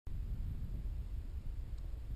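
Quiet background with a steady low rumble and no distinct events.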